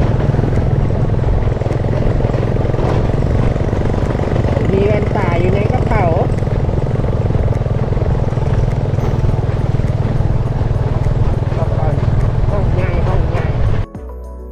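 A small motorcycle's engine running steadily while riding on a dirt road, heard from the bike with heavy wind rumble on the microphone. A brief voice calls out about five seconds in.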